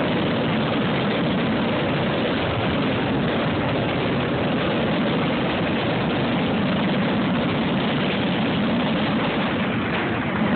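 Fireworks finale: many aerial shells bursting so close together that the explosions merge into one loud, continuous rumble with no single bang standing out.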